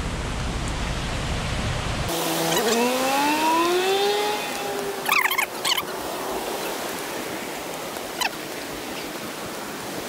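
Steady rush of a rainforest creek's flowing water. A low rumble cuts off about two seconds in. A held pitched tone then rises and levels off for a few seconds, and a few sharp short sounds come near the middle.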